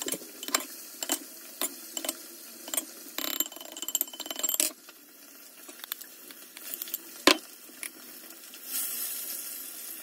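Metal spoon clinking and scraping against a glass mixing bowl as chopped onion salad is spooned out into a ceramic dish: quick clicks at first, a stretch of scraping about three seconds in, then sparser clicks and one sharp knock about seven seconds in.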